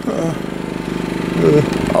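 A small engine running steadily with a fast, even pulsing beat, with short bits of a man's voice over it.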